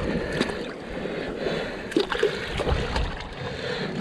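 Rock-pool water sloshing and splashing as gloved hands reach under the surface among kelp to feel under a rock, with a few small knocks about halfway through.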